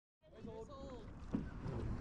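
Faint, distant voices over a low rumble of wind on the microphone, with a single knock about two thirds of the way through.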